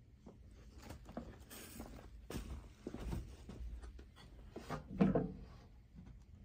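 Handling noises from a hand reaching into a reptile terrarium: a run of irregular rustles and knocks, the loudest knock about five seconds in.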